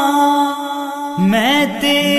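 A naat sung by a man, unaccompanied by instruments: a steady held drone runs under it, and just over a second in his sung line enters with pitch that slides and bends.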